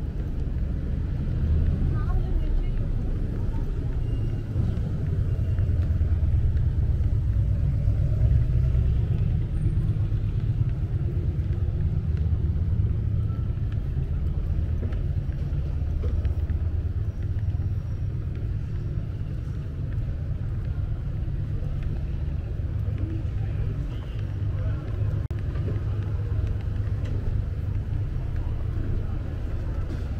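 City street ambience: a steady low rumble of traffic, with indistinct chatter of passing pedestrians.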